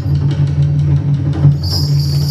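Traditional Sikka gong-and-drum music for the Hegong dance: low gongs sounding in a steady pulsing pattern, with a high jingling that comes back in near the end.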